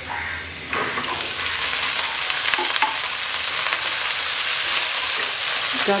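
Chopped vegetables, cauliflower by the look of them, tipped into hot oil in a frying pan. The sizzle jumps up sharply about a second in and carries on steadily, with light scraping and clicks as the pieces are stirred.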